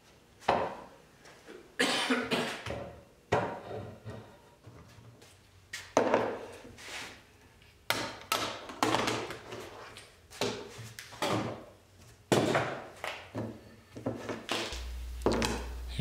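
Wooden boards and metal bar clamps being handled during a glue-up: about a dozen separate knocks and clatters of wood and clamp parts, each dying away quickly.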